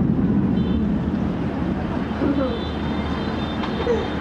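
Steady low rumble of city traffic from far below, with faint voices now and then.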